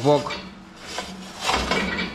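A steel disc turning in the rolls of a running three-roll bending machine, with metal scraping and clinking against the rolls over a steady machine hum as the roll presses the disc into a shallow dish. The scraping grows louder and rougher about one and a half seconds in.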